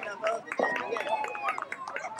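Many young children's voices chattering over one another, high-pitched, with a scatter of quick light slaps as small hands high-five down a handshake line.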